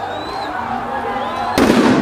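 Protest crowd shouting, then near the end a single loud bang from a tear gas canister, lasting under half a second.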